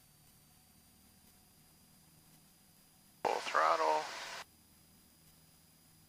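A short burst of a voice over the aircraft's intercom/radio headset audio, switched on and off abruptly about three seconds in, above a faint steady hiss.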